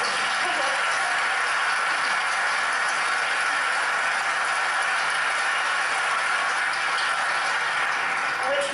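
Audience applauding: a steady, even wash of clapping that holds at one level throughout.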